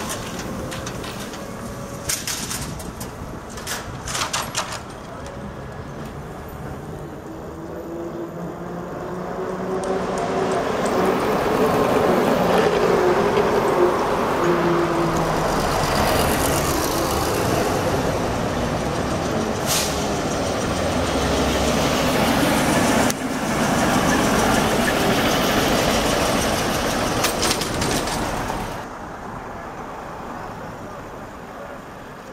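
Trolleybuses passing in street traffic. In the first seconds an electric traction motor whine glides in pitch, with a cluster of sharp clicks. Then a louder stretch of motor hum and road noise as an older ZiU-type trolleybus passes close, fading near the end.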